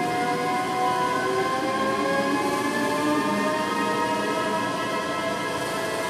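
Live electronic music: a dense synthesizer drone of many sustained tones layered like a chord. Some of the tones slowly slide upward in pitch while others hold steady.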